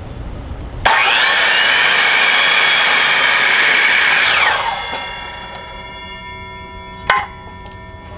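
Electric miter saw cutting a cedar board: the motor starts with a rising whine about a second in, the blade runs through the wood for about three and a half seconds, then the motor is let off and winds down with a falling whine. A short sharp knock comes near the end.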